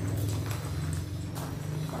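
A steady low background hum with a few short knocks or clicks, about three in two seconds.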